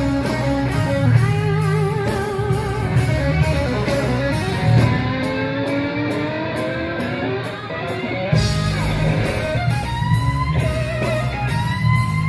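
Live blues-rock band: an electric guitar soloing with wide vibrato and string bends over bass and drums. Around the middle the bass and drums drop out for a few seconds, leaving the guitar more exposed, and the full band comes back in about eight seconds in.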